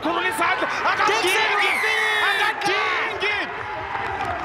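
Male commentator's excited, raised voice calling the play over crowd noise from the stadium.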